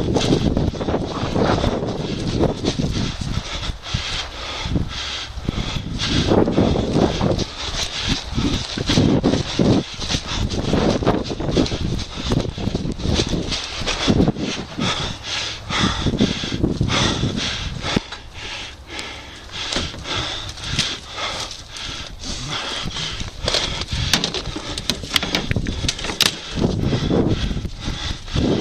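Irregular thuds and gusts of a person moving quickly on foot across rough grassy ground, with wind and rubbing on a head-worn camera's microphone and many scattered sharp clicks.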